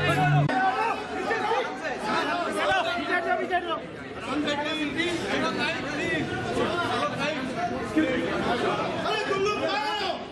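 A dense crowd of people talking and calling out at once, many overlapping voices with no single speaker standing out.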